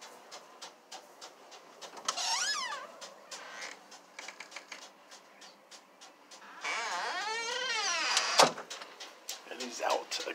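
An interior door's hinges creaking: a short squeal as the door opens about two seconds in, then a longer, louder creak that rises and falls in pitch as it swings shut, ending in a sharp click of the latch.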